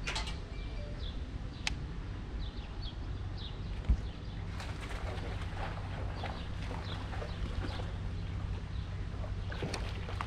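Wind rumbling on the microphone over a low steady hum, with small birds chirping now and then. One sharp thump about four seconds in and a few light clicks.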